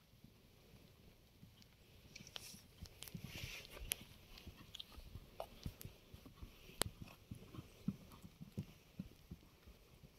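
Horse's hooves thudding dully on a sand arena at a canter, faint at first and growing clearer and more frequent from about two seconds in as the horse comes closer, with a couple of sharp clicks.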